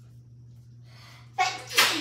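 A person sneezing once near the end: a short voiced catch of breath, then a sharp, loud burst of air.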